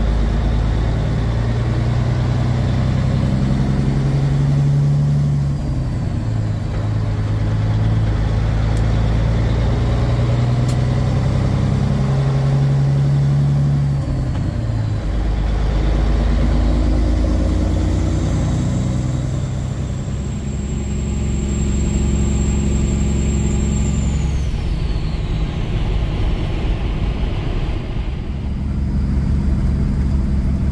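Semi-truck diesel engine, heard from inside the cab, pulling a heavy load up through the gears: the engine note climbs, then drops back at each gear change, several times over.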